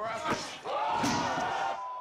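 A spinning kick landing for a knockout: a thud about half a second in, then a swell of several men shouting in reaction, echoing in a large room.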